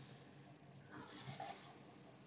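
Faint marker strokes on a whiteboard: a few short scratches about a second in, lasting under a second.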